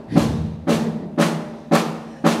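A steady drum beat of about two strikes a second.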